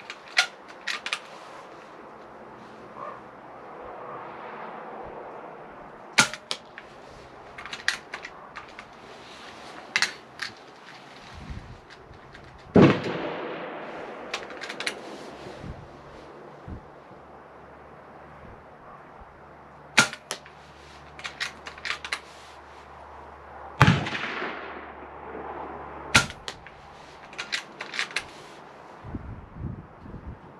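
Hatsan Flash .22 PCP air rifle fitted with a Huma-Air Mod40-5/0 moderator firing five shots several seconds apart, each a sharp crack, with smaller clicks in between.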